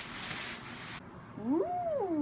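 A bag rustles as a hand rummages inside it, cutting off abruptly after about a second. Then a drawn-out vocal 'ooh' rises and falls in pitch.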